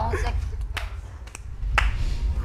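A brief laugh, then three sharp snaps, about half a second apart, over a low steady rumble.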